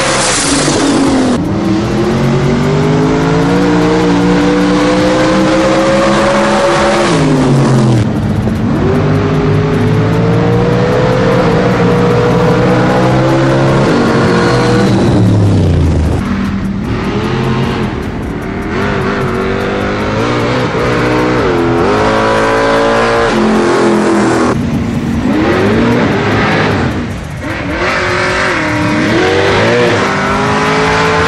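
Drag race cars' engines at full throttle, rising in pitch, then dropping off sharply about eight seconds in as they let off and wind down. In the second half engines rev up and down in short bursts as the next pair races down the track.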